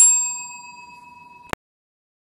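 A chrome service desk bell struck once by a dog's paw, giving a bright ding that rings on and slowly fades. About a second and a half in, the ring cuts off abruptly with a click.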